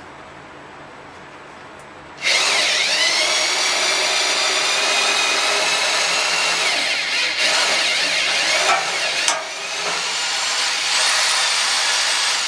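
Go-kart front suspension being flexed: the steel coil springs rub and grind against the steel plate they rest on, a continuous scraping noise with wavering squealing tones and a few sharper clicks, starting about two seconds in. The noise is the spring tops shifting on the plate as they compress and extend, not a broken part.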